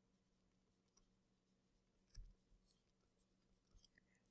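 Near silence: faint room tone, with one faint tap about halfway through.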